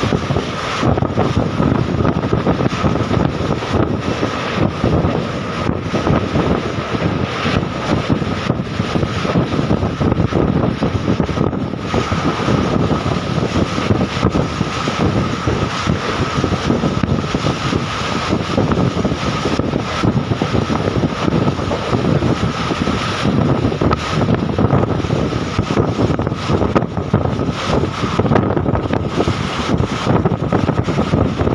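Passenger train running at speed, heard from an open window: wind buffeting the phone's microphone over the continuous rumble of the train, with a thin steady whine throughout.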